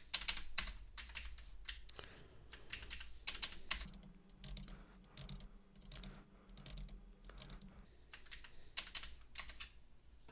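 Computer keyboard keys being pressed in irregular quick runs of clicks: Enter and Delete keystrokes as lines of code are broken up and edited.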